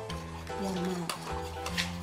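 Metal spoon stirring and scraping in a ceramic bowl, mashing shrimp paste into water, with sharp clinks of the spoon against the bowl, the loudest near the end. Background music with sustained notes runs underneath.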